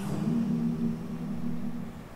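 Soft a cappella music: a low held vocal note that steps up once shortly after the start and fades away near the end.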